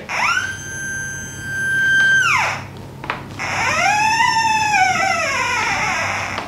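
OKM Pulse Nova Omega Plus pulse-induction metal detector sounding its target tone as a gold bracelet is passed over the search coil. One tone sweeps up, holds high for about two seconds and falls away. About three seconds in, a second, lower tone rises and falls more slowly.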